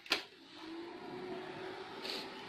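Lenovo ThinkCentre desktop switched on: a click from the front-panel power button, then its fans spinning up into a steady hum with a low tone that rises slightly and holds. The PC is booting normally after its RAM was cleaned and reseated.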